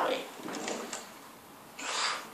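A window curtain being moved: a faint sliding rustle with a few light clicks.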